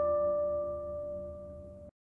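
A single struck bell-like tone rings on and slowly fades over a low rumble, then cuts off suddenly just before the end.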